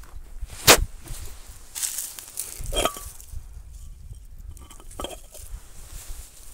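Footsteps in slippers on a wooden deck and dry leaves, with one sharp knock about a second in and scattered light knocks and rustles after it.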